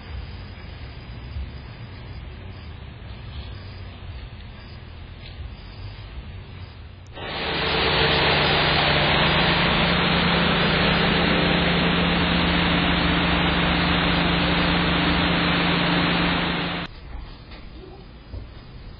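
Car engine running close to a security camera, heard through the camera's small microphone: a steady hum under loud hiss that comes in suddenly about seven seconds in and cuts off abruptly about ten seconds later. Before it there is only a faint low rumble.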